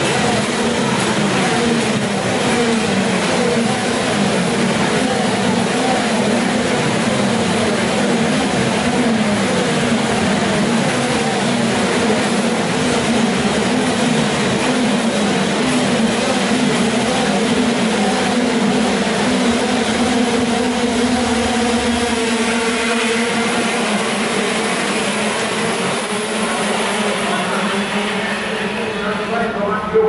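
Many 125 cc two-stroke KZ2 shifter kart engines running together on the starting grid, a dense, steady drone of overlapping engine notes. Near the end fewer engines are heard and one revs up.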